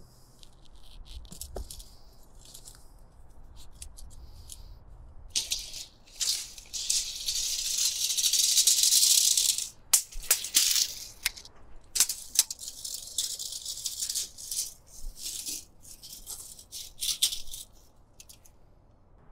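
Long open-reel measuring tape being wound back onto its reel, a rattling whir that comes in bursts. It runs steady for a few seconds in the middle, then stops and starts.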